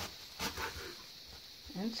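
A kitchen knife cutting through a wedge of raw cabbage on a countertop, one sharp crunching cut about half a second in.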